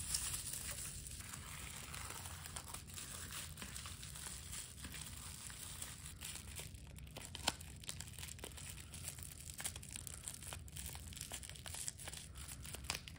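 Bubble wrap crinkling and rustling as it is rolled by hand around a small crystal tower, with many small crackles and one sharper tick about seven and a half seconds in.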